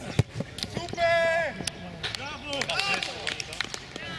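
A football struck hard in a shot, one sharp thud just after the start, followed about a second in by a man's long loud shout and more shouting from the players as the shot goes in for a goal.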